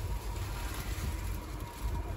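A steady low hum with a faint thin whine above it, with no distinct knocks or events.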